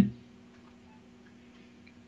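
A man's voice trails off in the first moment, followed by a pause of near silence with only a faint steady hum.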